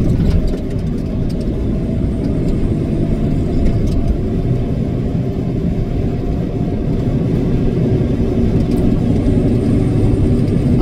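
Steady low drone of a semi truck's engine and road noise inside the cab at highway speed.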